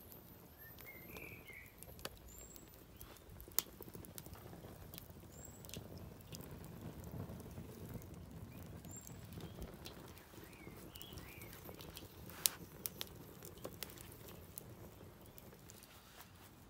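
Logs burning in a fire pit, crackling quietly with scattered sharp pops, the loudest about three and a half and twelve and a half seconds in. Small birds chirp briefly now and then.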